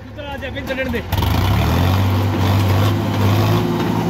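Sonalika DI 50 tractor's diesel engine revving up sharply about a second in and holding at high speed under heavy load, straining to pull a loaded trolley stuck in soft soil. A man's voice is heard briefly at the start.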